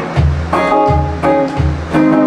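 Electric guitar strummed in a steady, even rhythm of chords, about two to three strokes a second, between sung lines of an upbeat song.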